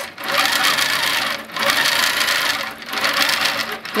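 Handi Quilter Infinity 26-inch longarm quilting machine stitching at speed, a steady rapid needle chatter that dips briefly about every second and a half.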